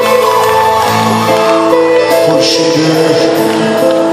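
A live band with a string orchestra playing a Persian pop song, heard loud and steady from the audience in a concert hall. Long notes are held, with a cymbal-like splash about two and a half seconds in and no clear singing.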